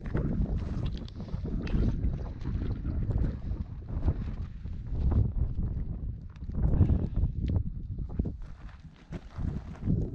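Wind buffeting the camera microphone in uneven gusts, a low rumble that swells and drops.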